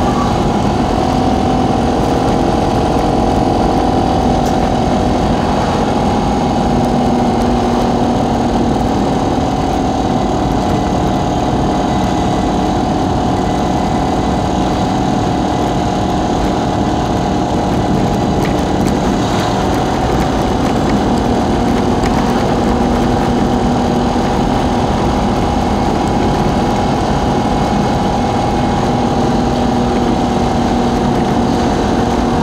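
Steady engine and road drone heard from inside a moving vehicle, with a continuous whine that holds nearly the same pitch throughout.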